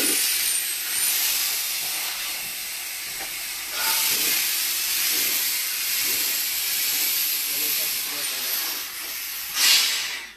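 Quik-Shot cured-in-place pipe-lining inversion rig hissing steadily under pressure. The hiss swells briefly just before the end and then cuts off suddenly.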